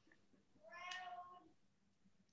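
A faint, short high-pitched cry lasting under a second, about a second in, against near silence.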